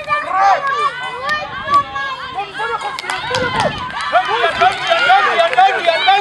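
Many voices shouting over one another at once, mostly high-pitched, like a sideline crowd and young players calling during a ruck.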